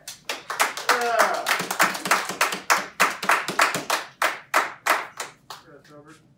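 A few people clapping in a brisk, even rhythm, about four or five claps a second, which dies away near the end.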